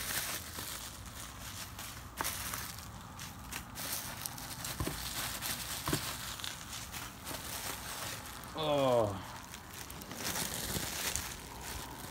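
Plastic bubble wrap and packaging rustling and crinkling as hands dig through it, with scattered sharp clicks and crackles. A short voice sound falling in pitch comes about nine seconds in.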